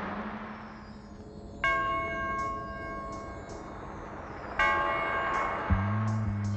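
Two deep bell strikes in the song's instrumental intro, about three seconds apart, each ringing out and slowly fading over a soft low drone. Deep bass notes come in near the end.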